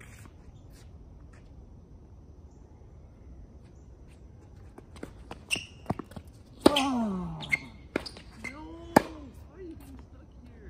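Tennis rally on a hard court: a few sharp ball strikes and bounces in the second half. The loudest is a racket hit about two-thirds of the way in, with a loud grunt from the hitter that falls in pitch. Another hard hit with a short grunt comes near the end.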